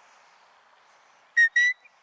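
Two short, sharp whistle blasts about a second and a half in, the second rising slightly: a sheepdog handler's herding whistle command to the working dog, here the come-bye flank on a drive.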